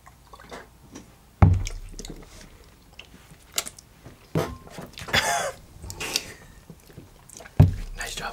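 A shot glass set down hard on the bar top with a sharp thump about a second and a half in, then short breaths and mouth sounds from the drinkers after the burning shot, and another thump near the end.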